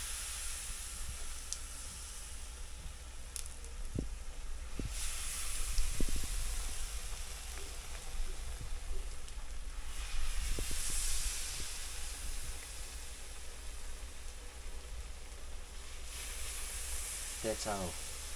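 Pancake batter deep-frying in hot oil, a steady sizzle that flares up four times, about every five seconds, as fresh spoonfuls of batter go in. A few light knocks of the spoon come in between.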